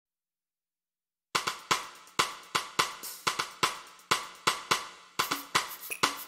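Silence for about a second, then a drum beat starts the song's intro: crisp, snare- and hi-hat-like hits at about two to three a second, with little bass.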